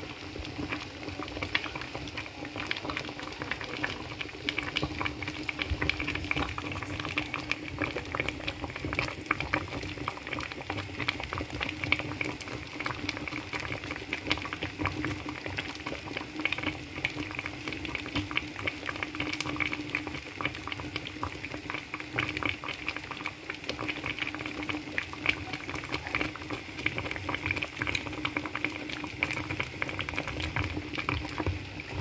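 Pot of meat stock in a thick palm-oil broth bubbling at a boil, a dense steady patter of small pops, with a steady low hum under it.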